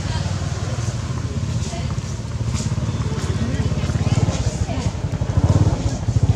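An engine running steadily near idle, a low rumble, with faint voices over it.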